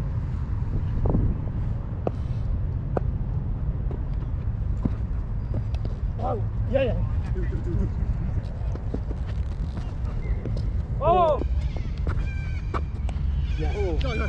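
Steady low rumble of wind on a body-worn camera's microphone on an open field, with a couple of brief distant shouts from players, one about halfway through and another near the end.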